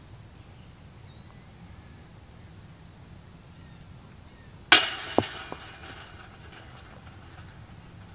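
A thrown disc golf disc hitting the chains of a metal disc golf basket, a sudden loud metallic jingle and rattle that dies away over about a second with a few more clinks. Insects drone steadily underneath.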